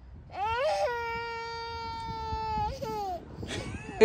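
A toddler's voice: one long whining wail held on a single high note, rising at the start and falling away about three seconds in.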